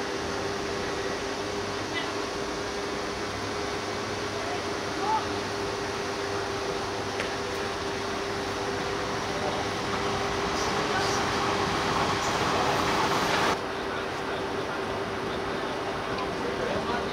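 Open-air football-pitch ambience: players' distant shouts over a steady rushing background and a faint steady hum. A louder rushing noise swells about two-thirds of the way in and cuts off suddenly.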